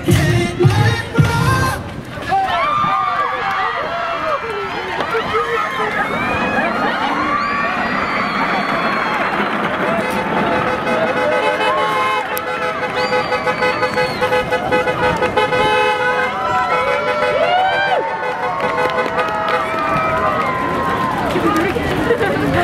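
Pop music playback cuts off about two seconds in, followed by a crowd of fans screaming and shouting, many high voices at once, with one long held tone in the middle.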